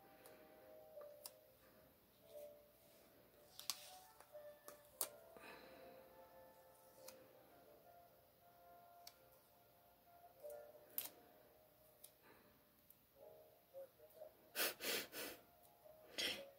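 Near silence with faint background music, broken by soft scattered clicks and rustles of paper stickers being peeled and pressed onto a planner page by hand, with a short burst of louder paper rustling near the end.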